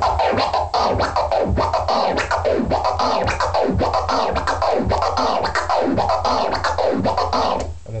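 Delayed flare scratches on a vinyl turntable: the record is pushed forward and pulled back in a steady run of rising and falling sweeps, each stroke chopped by quick crossfader clicks, over a backing beat.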